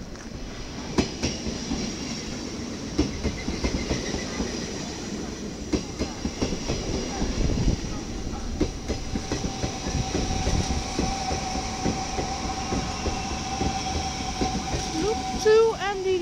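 Dutch double-deck DD-AR push-pull train with mDDM motor cars rolling into a station platform. Its wheels clatter over the rail joints in a dense run of clicks, and a steady high tone joins about halfway through.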